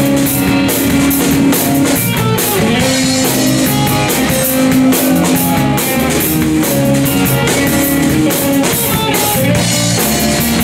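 Live blues-rock band playing an instrumental passage: Stratocaster-style electric guitar over electric bass and a drum kit with a steady cymbal beat, no vocals.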